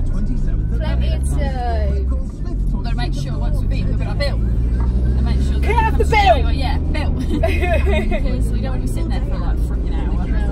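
Steady low engine and road rumble inside a moving car, with women's voices singing along to music, including long sliding notes.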